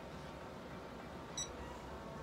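A single very short high-pitched beep-like tone about one and a half seconds in, over a low steady room hum.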